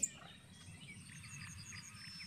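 Faint outdoor background with a few scattered small, high chirps.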